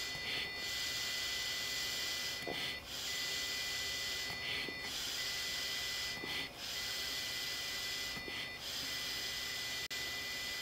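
A man blowing through the mouthpiece and hose of an evidential breath-alcohol tester: a breathy hiss in short blows, broken by brief pauses about every two seconds as he stops and draws breath. These are start-and-stop blows rather than the one long, steady blow the test needs.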